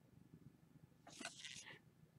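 Near silence, broken a little over a second in by a few faint, brief rustles of trading cards being slid across a stack by hand.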